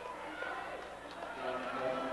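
Murmur of spectators' voices in a gymnasium crowd: low, overlapping chatter, a little louder in the second half.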